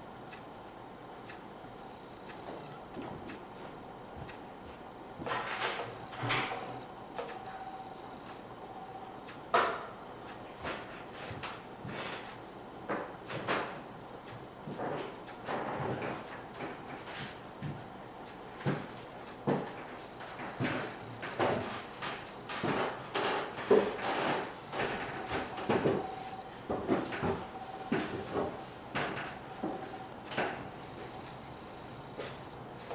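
Incidental room noise during a silent piano piece, no notes played: scattered knocks, clicks and creaks, sparse at first and more frequent in the second half, over a faint steady hum that comes and goes.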